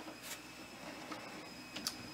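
Faint light clicks of chicken eggshells set against a plastic incubator egg turner: a single tap early, then a few quick taps near the end.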